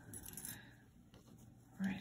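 Faint, light clicks and taps of a gold-tone metal brooch being handled and set down on a table.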